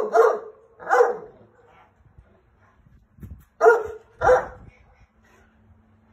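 A large dog barking: two barks at the start, one about a second in, and two more around four seconds in.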